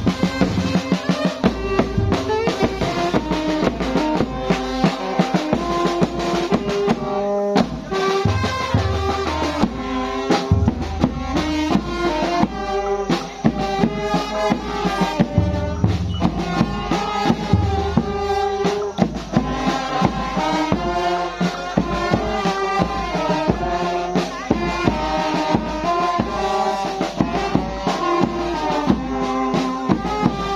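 Vietnamese funeral brass band playing: saxophones and brass carry a continuous melody over a steady beat of drums.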